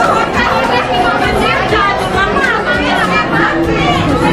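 Chatter of a crowd in a room: many voices talking at once and overlapping, with no single speaker standing out.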